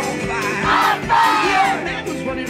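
Live acoustic guitar and foot-pedal bass drum playing an upbeat song, with audience members yelling and whooping over the music.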